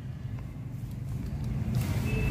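Low rumble of a motor vehicle running somewhere out of sight, growing gradually louder.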